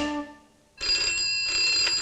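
The music cuts off, and a little under a second later a desk telephone starts ringing with a steady, bright, high ring.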